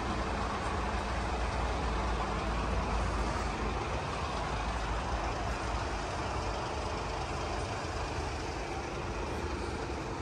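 A steady low rumble with a hiss over it, of the kind a vehicle makes. It holds an even level throughout, with no distinct knocks or events.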